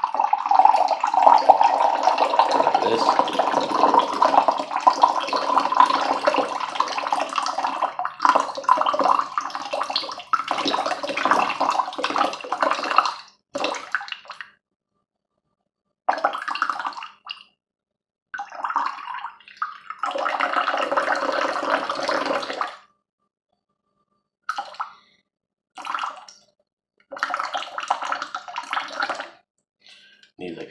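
Water poured from a tall aluminium drink can into a cup: one long unbroken pour of about thirteen seconds, then several shorter pours with silent gaps between them.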